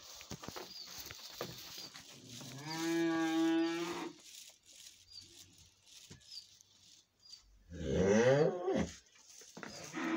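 A downer cow, lying down and unable to rise, lowing twice: one long, steady moo, then a shorter one that slides in pitch near the end. Faint knocks and shuffling come between the calls.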